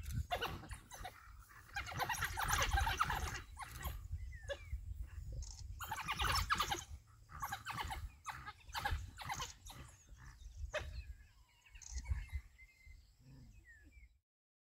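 African wild dogs calling with short, high, rising and falling chirps, with two louder, rough, noisy bursts a few seconds apart, over a low rumble.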